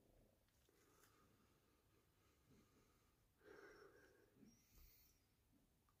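Near silence: faint room tone, with one soft breath about three and a half seconds in.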